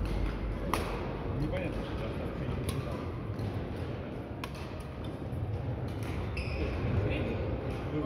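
Badminton rackets striking a shuttlecock during a rally: sharp pings about every two seconds, sounding in a large hall, over a murmur of voices.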